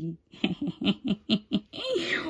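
A woman laughing in a quick run of short giggles, starting about half a second in.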